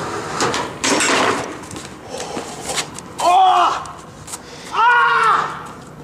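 Skateboard clattering and scraping on a wooden picnic table, with sharp knocks in the first second and a half. Two short high-pitched vocal cries follow later.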